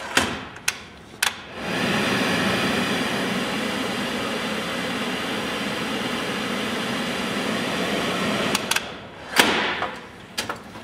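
Electrolux EFP6500X telescopic cooker hood: a few switch clicks, then its extractor fan runs with a steady rushing noise for about seven seconds. Near the end come more clicks and a knock as the pull-out front is pushed shut.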